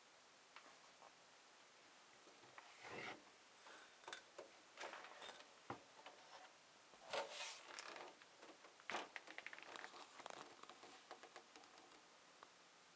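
Faint handling noise of a hand and camera moving around a rack-mount synthesizer unit: scattered rustles, scrapes and clicks, loudest about seven seconds in, with a quick run of small ticks near the end.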